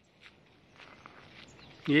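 Faint footsteps of someone walking on a trail, a few soft steps, before a man's voice starts up loudly near the end.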